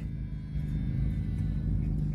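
Car engine idling, a steady low hum heard from inside the stopped car's cabin.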